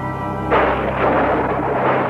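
A sudden loud thunderclap sound effect about half a second in, rumbling on with further surges, over a held music chord.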